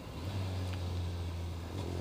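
Suzuki Hayabusa's inline-four engine running at low, steady revs as the bike slows under both brakes.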